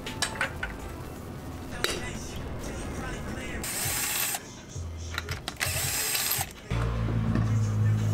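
A floor jack clicking as it is pumped, then a cordless impact wrench taking off the front wheel's lug nuts: two loud bursts of hammering about a second each, with the tool's motor humming between and after them as the nuts spin off.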